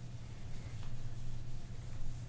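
Whiteboard eraser being rubbed back and forth across a whiteboard, a faint rasping swish, over a steady low hum.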